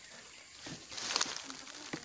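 Loose compost being scraped out of a wheelbarrow with a hoe and spilling onto the ground: a soft rustling scrape that builds about half a second in.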